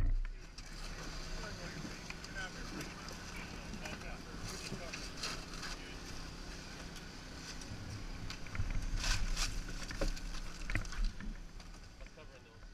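Engine of a hydraulic rescue-tool power unit running with a steady hum, with scattered metal clanks and knocks as crews work around the cut car body; the work gets louder for a couple of seconds toward the end.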